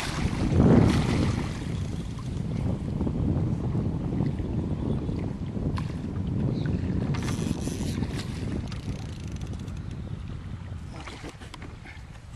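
A hooked wels catfish splashes at the surface beside the boat about a second in. Then a steady low rumble of wind on the microphone runs on and slowly fades.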